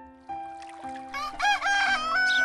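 A rooster crows once, starting about a second in and lasting under a second, over background music of slow, held notes.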